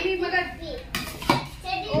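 Steel ladle knocking and scraping against a steel cooking pot as rice is scooped out, with three sharp metallic clinks in the second half.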